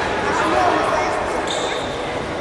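A futsal ball thudding on the hard floor of an echoing sports hall, with children's voices in the background.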